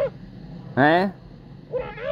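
A person's voice giving one short, loud, sharply rising whine-like cry about a second in, with brief voice sounds just before it and near the end.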